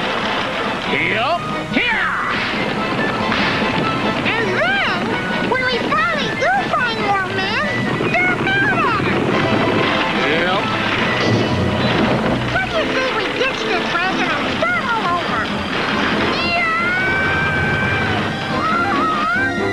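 Cartoon soundtrack: background music mixed with wordless character vocal sounds, many short swooping squeals and cries, with a steady held tone near the end.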